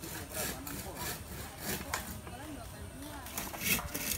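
Hand saw cutting through bamboo, in repeated strokes about two or three a second.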